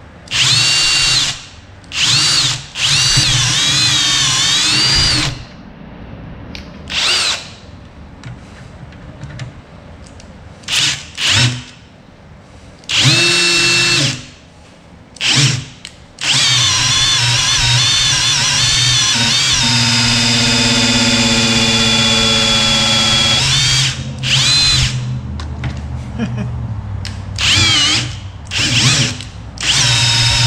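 Cordless drill spinning the oil pump of a Pontiac V8 through the distributor hole to prime the oiling system, run in repeated bursts of one to two seconds and one long run of about eight seconds. The motor's whine wavers with the trigger and drops lower during the long run as it works against the pump's oil pressure.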